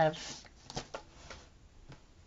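A few light rustles and soft taps of paper being handled on a desk, scattered through the pause.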